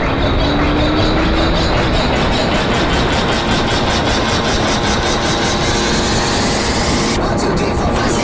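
Honda CBR125 motorcycle's single-cylinder engine running under way, with heavy wind noise on the camera microphone; the engine's pitch rises slowly as the bike speeds up.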